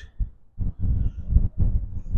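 Low, irregular rumbling thuds of buffeting on a handheld microphone, with one short click near the start.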